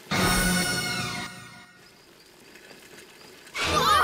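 A short cartoon scene-change music sting: a bright chord that starts suddenly, holds about a second and fades out, followed by a quieter stretch. Near the end a character's voice begins.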